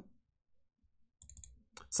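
Quiet pause, then a short run of faint computer-mouse clicks just past the middle.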